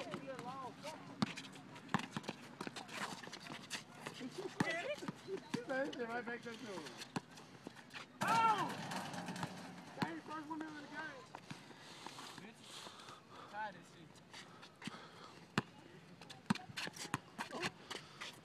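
Pickup basketball game on an outdoor asphalt court: scattered thuds of the ball bouncing and sneaker footsteps running, with players' voices and shouts coming and going.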